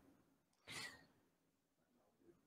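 Near silence, with one short, faint breath from the speaker about three quarters of a second in.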